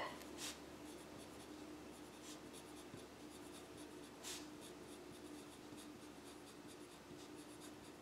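Pen writing on paper: faint, irregular scratching of handwritten strokes, with two slightly louder strokes about half a second and four seconds in. A faint steady hum runs underneath.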